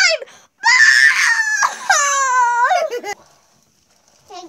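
A young child crying out loudly in a high-pitched wail for about two seconds. It starts rough and screechy, then becomes a clear cry that slides down in pitch and rises again at the end.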